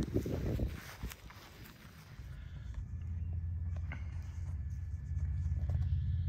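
Footsteps and handling rustle on dry grass, then a steady low wind rumble on the microphone building from a few seconds in.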